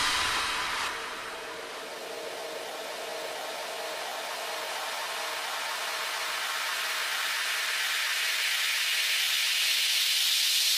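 Breakdown in an electronic dance track: the beat drops out and a white-noise riser hisses, slowly swelling louder.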